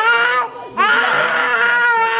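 An 18-month-old toddler crying in loud, high-pitched wails: a short cry at the start, then a long held wail from just under a second in.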